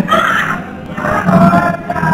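A group of voices singing to acoustic guitar accompaniment, dipping briefly in loudness in the middle.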